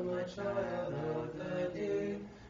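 Unaccompanied Orthodox liturgical chant: voices holding sustained notes that move in steps. There is a short breath about a third of a second in before the next phrase.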